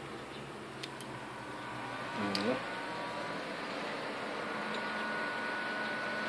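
Desktop computer hardware starting up: fan and drive motors whirring, growing slowly louder, with a faint whine that climbs in pitch and then holds steady.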